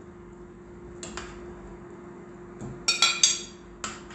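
Metal spoon knocking against the side of a stainless steel cooking pot while stirring white beans into tomato sauce. One ringing clink about a second in, then a quick run of three or four clinks near the end.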